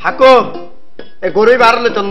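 A man speaking in Bengali, with a pause and a brief click about a second in.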